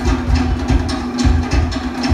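Polynesian dance percussion: rapid, evenly spaced strikes on wooden drums over a deep bass-drum pulse and a steady low held tone.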